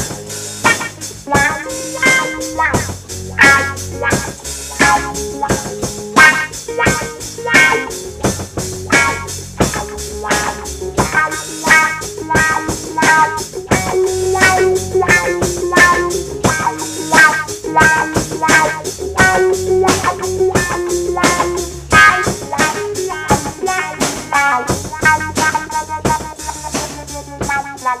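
Instrumental blues-rock jam: electric guitar played through a custom modded wah pedal over a drum kit keeping a steady beat.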